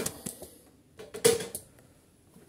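Handling knocks and a hard plastic clatter as the removed recoil starter housing is set down on a workbench, with the loudest clatter about a second in.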